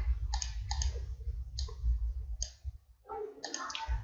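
Computer mouse clicking: several separate sharp clicks, irregularly spaced, over a steady low hum.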